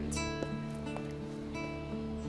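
Background score music: a few plucked guitar notes over held tones.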